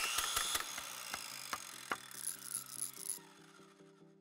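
Electronic logo sting: a glitchy burst of noise and clicks with a falling whoosh, scattered ticks, then a held synthesizer chord near the end.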